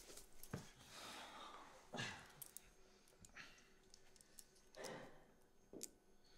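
Near silence in a small room: faint rustling and breaths, with a few soft metallic clicks as a pair of handcuffs is unlocked.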